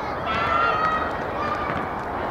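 A child's high-pitched shout held for most of a second, then a shorter call, over steady outdoor noise: young football players calling out during play.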